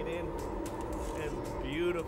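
Steady low rumble of restaurant kitchen equipment with a faint steady hum, and a brief voice in the second half.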